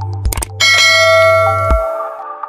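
Subscribe-animation sound effects: a few sharp clicks, then about half a second in a loud notification-bell chime that rings on and slowly fades, over a low electronic drone that stops near the end.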